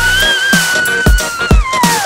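Background electronic music with a thudding kick-drum beat. Over it, a long high-pitched scream from a boy on an inflatable slide rises, holds and falls away near the end.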